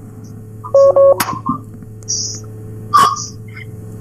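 A short electronic beep of a few steady tones on the phone line about a second in, with a sharp click right after it and another about three seconds in, over a steady low hum, as a WhatsApp call is being connected.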